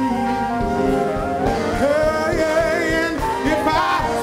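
Live soul band music: a male lead singer sings long, sliding notes into a handheld microphone over electric bass and a horn section, his line rising near the end.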